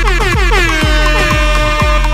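Electronic dance music remix: a steady four-on-the-floor kick drum about twice a second under a loud horn-like blast that glides down in pitch at the start, then holds one note.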